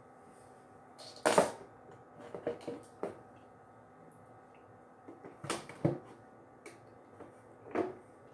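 A few sharp knocks and clatters of things being handled, the loudest about a second and a half in and the others in small clusters later, over a faint steady hum.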